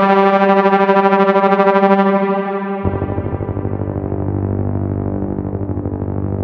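Techno synth horn patch on Ableton's Wavetable synth holding a buzzy, harmonic-rich note with a fast, even tremolo pulsing in its level. A little under three seconds in it drops to a lower note that rings on with the same pulsing.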